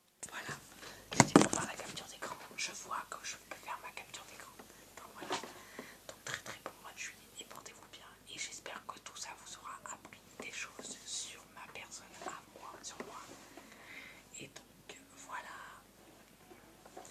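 Close-up whispered speech, breathy and without much voice, with a loud handling bump about a second in as a hand brushes over the microphone.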